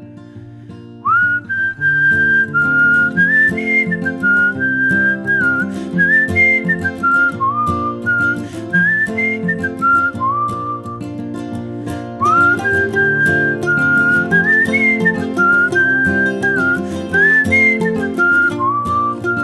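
Instrumental break of an acoustic song: a whistled melody over acoustic guitar. The whistle enters about a second in with an upward scoop, and its phrase starts over again about twelve seconds in.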